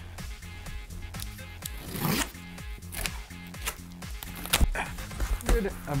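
Cardboard shipping box being opened by hand: short ripping and scraping of packing tape and cardboard, the longest about two seconds in, then a couple of sharp knocks, over background music with a steady bass.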